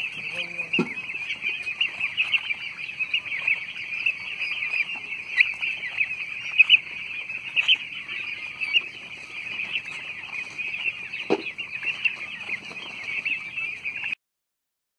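A flock of young domestic turkeys calling nonstop: many overlapping high-pitched peeps and chirps, with a few louder calls standing out now and then.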